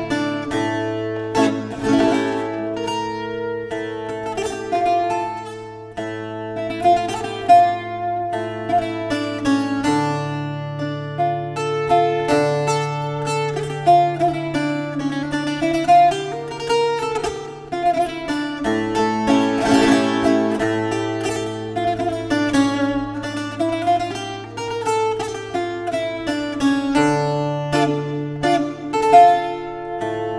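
Azorean viola da terra, a steel-strung, double-coursed folk guitar, played solo: a slow, introspective plucked melody over long-held low bass notes, with a few louder strummed chords.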